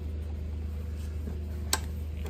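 Steady low background hum with a single sharp click near the end, from the plastic Scotts EdgeGuard Mini broadcast spreader being tilted and handled.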